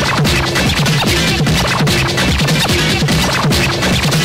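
Early-1990s hardcore rave DJ mix dubbed from cassette: loud electronic dance music with a fast, dense drum beat, deep bass and short repeated synth notes.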